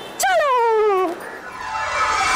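A woman's drawn-out falling whine, one pleading vocal sound just under a second long that slides down in pitch. Background music comes in near the end.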